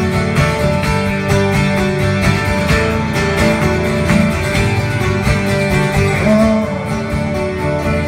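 Live band playing an instrumental passage: acoustic guitars strumming over an electric bass, with no singing.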